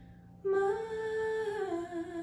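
A woman's voice comes in about half a second in, after a brief hush, and holds one long sung note that slides down in pitch near the end.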